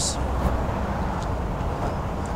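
Steady low rumble of outdoor background noise, with a faint hiss and no distinct event.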